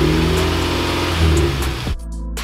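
The freshly rebuilt turbocharged 2.0-litre four-cylinder of a 2008 Mitsubishi Lancer Evolution X, held at raised revs for engine break-in, the revs rising and dipping slightly. It cuts off suddenly just before the end.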